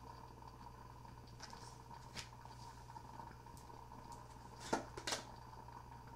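Tarot cards being handled and laid down on a cloth-covered table: a few faint short taps and clicks, the two loudest close together near the end, over a faint steady electrical hum.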